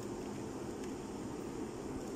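Steady, faint hiss of room tone with no distinct clicks or knocks.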